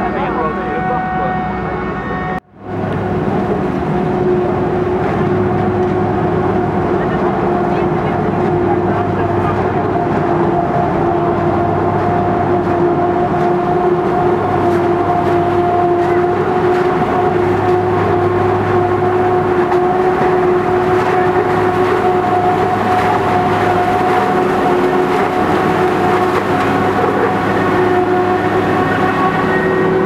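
Claas Jaguar 970 self-propelled forage harvester running under load while chopping maize, a steady whine over its engine, with a tractor running alongside. The sound cuts out briefly about two and a half seconds in.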